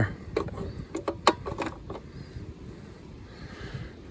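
A few sharp clicks and knocks in the first two seconds as the pull-out disconnect of an outdoor 240-volt air-conditioner disconnect box is handled to cut power to the mini split, over a steady low background rumble.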